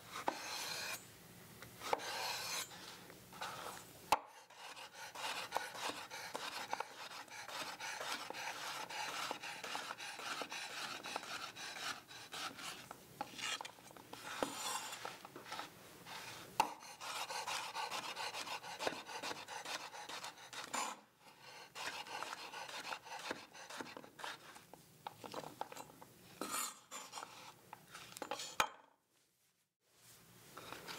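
Chef's knife slicing a zucchini into long strips and chopping it on a wooden cutting board: a continuous run of scraping, rasping cuts, broken by occasional sharp knocks of the blade on the board.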